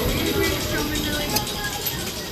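Riders' voices chattering over a steady low rumble from a spinning-tub ride's machinery.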